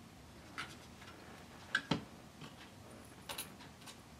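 Small clicks and taps of a hand tool working on a wooden model-boat hull, about half a dozen spaced irregularly, the loudest a close pair about two seconds in.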